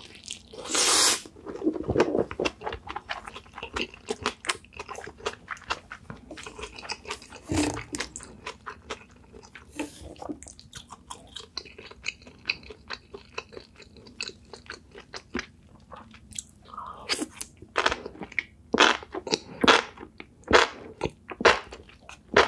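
Close-miked chewing and wet mouth sounds of a person eating spicy sauce-coated enoki mushrooms and stir-fried baby octopus: many short crunchy clicks, with a louder burst about a second in and denser, louder chewing near the end.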